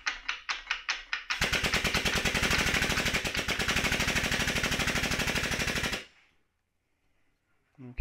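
Air-driven pump of an air-over-hydraulic ram (Pittsburgh 8-ton long ram) chattering very fast and evenly for about four and a half seconds while air is fed to it, then cutting off suddenly. A few slower clicks lead into it.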